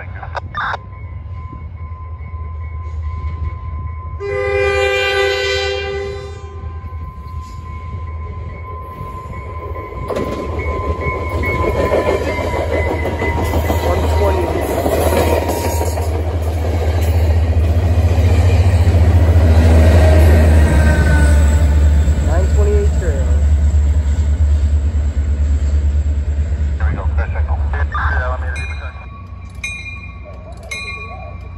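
A Caltrain commuter train's diesel locomotive sounds one horn chord of about two seconds, a few seconds in. The train then approaches and passes close by: low engine rumble and wheels on rail build to their loudest around twenty seconds in and drop away near the end.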